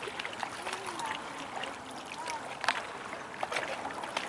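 Steady rush of choppy, wind-stirred river water, with a few faint clicks.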